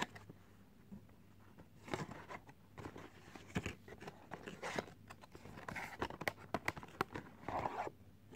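A sharp click at the very start, then a paperboard perfume box being opened by hand: scattered rustling, scraping and light clicks of the card flaps and inner packaging as the bottle is worked out.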